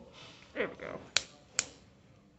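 A short falling vocal sound, then two sharp clicks about half a second apart.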